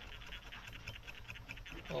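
Fly-tying thread being wrapped from a bobbin around a salmon hook's shank: a faint, rapid, scratchy ticking.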